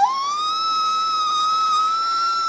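A toddler imitating a wolf's howl: one long high 'ooo' that slides up at the start and then holds steady.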